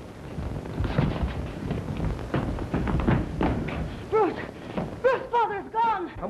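Irregular thuds and scuffling, then several short shouted exclamations in the last two seconds, over a steady soundtrack hiss.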